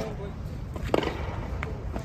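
Skateboard wheels rolling on a concrete sidewalk, a steady low rumble, with one sharp knock about a second in.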